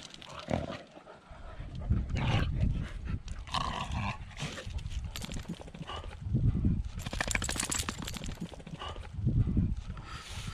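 Sounds of shar-pei dogs moving about close to the microphone, with repeated low rumbling swells and a run of fast crackly scratching about seven seconds in.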